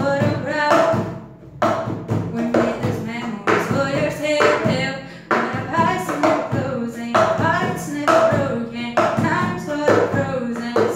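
A woman singing a pop melody while keeping a cup-song rhythm: her hands slap and tap a wooden desk, and a cup is lifted and knocked down on the tabletop in a repeating pattern.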